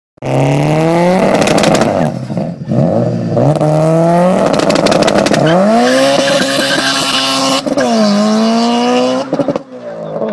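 Subaru Impreza WRX STI's turbocharged flat-four revving hard on launch control, with dense crackling pops from the anti-lag system. It then pulls away under full acceleration, the engine note climbing and dropping back twice in the second half at gear changes.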